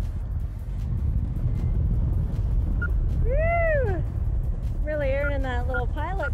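Wind buffeting the camera's microphone in paraglider flight, a steady low rumble. About three seconds in a person's voice gives a single cry that rises and falls in pitch, and talk starts near the end.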